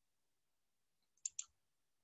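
A quick pair of computer-mouse clicks about a second and a quarter in, in near silence.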